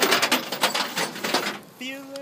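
Loud crackling rustle of a phone microphone being handled and rubbed as the phone is moved, lasting about a second and a half before a voice comes in near the end.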